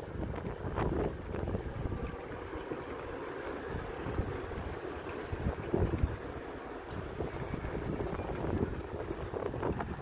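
Wind buffeting the phone microphone in a steady low rumble, with a few brief faint sounds about a second in, near six seconds and near the end.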